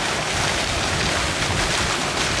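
Steady rushing noise of wind on the camera microphone, filling a pause in the talk.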